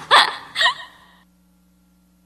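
A woman's short laugh in two quick bursts within the first second, after which the sound dies away to silence.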